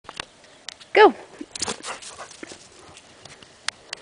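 A dog gives one short, loud bark about a second in, followed by brief rustling noises and scattered light clicks.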